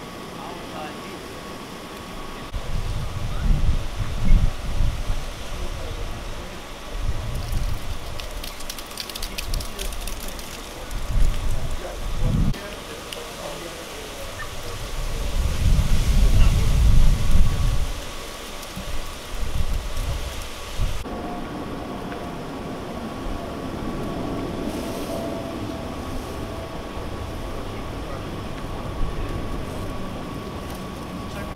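Outdoor street ambience with irregular low rumbles that swell and fade over several seconds, loudest in the middle, over a steady faint high hum.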